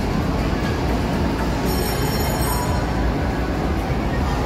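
Amusement park ambience: a steady low rumble with faint background music, and a brief high-pitched whine about two seconds in.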